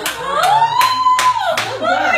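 Hands clapping a steady beat, about two and a half claps a second, under a woman's voice singing one long held note that rises and then falls away.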